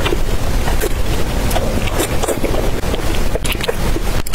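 Close-miked chewing and wet mouth sounds of someone eating fatty pork belly, with short smacks and clicks, over a steady low rumble.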